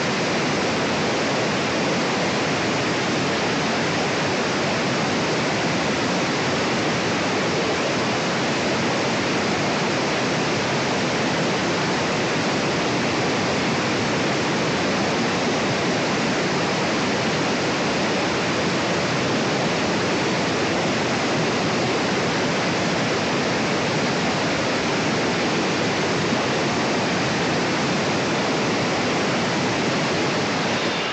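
A 9-inch angle grinder cutting through a clay brick, a loud, steady, harsh rushing noise with no clear whine.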